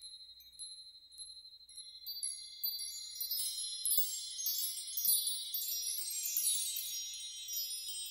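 Opening of a worship song: high, tinkling chime notes, many overlapping, that start faint and build over the first few seconds into a dense shimmer, with no voice yet.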